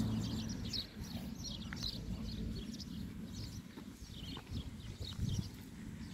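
Wind buffeting the microphone with a steady low rumble, while small birds chirp in short, quick calls again and again in the background.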